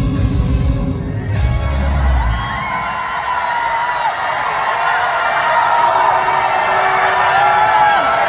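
A live trot song with a heavy bass beat comes to an end about two seconds in. The audience then cheers, with many voices screaming and whooping together.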